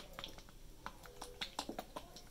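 A squeeze tube of runny, serum-thin liquid foundation shaken by hand: the liquid sloshes inside with faint, irregular little clicks.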